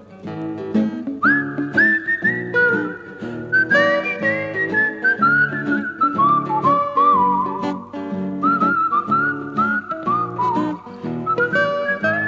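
A whistled melody, sliding up into each note, over strummed acoustic guitar in a folk song's instrumental break.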